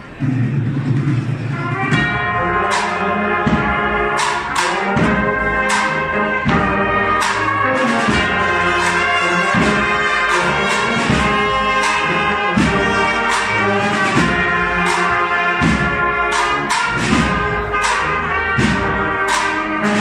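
A cornet-and-drum marching band (banda de cornetas y tambores) striking up a piece: low sustained notes begin suddenly, then the cornets and the drums come in about two seconds later and the full band plays on at a steady loud level.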